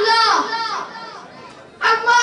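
A child's voice declaiming loudly into a microphone over a PA. A phrase ends with a falling pitch in the first half second and fades into a short lull, and the voice comes back in sharply near the end.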